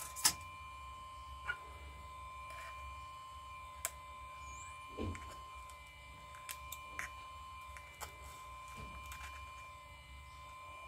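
Light, irregular clicks and taps of tweezers and small parts against an opened iPhone's metal frame, with a soft thump about halfway through, over a steady background hum with a thin high whine.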